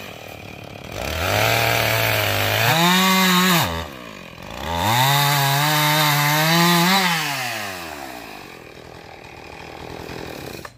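Gas chainsaw cutting a wet red oak log in two bursts. Each time, the engine revs up from idle and holds a steady pitch while the chain is in the wood, its pitch jumps higher briefly as the cut ends, and it then falls back to idle.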